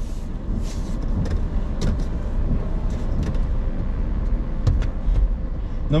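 Car cabin noise while driving: a steady low rumble of road and engine, with a few faint clicks scattered through it.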